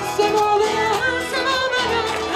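A Spanish-language praise song: a voice singing held notes that bend in pitch over instrumental backing.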